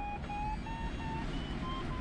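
A sailplane's audio variometer beeping in short, quick repeated tones, about three or four a second, over steady airflow noise in the cockpit. The chopped beeping signals that the glider is climbing in a thermal.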